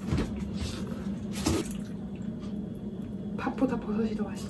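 A mouthful being eaten, with two short, sharp noises: one right at the start and one about a second and a half in. Near the end a woman starts speaking. A steady low hum runs underneath.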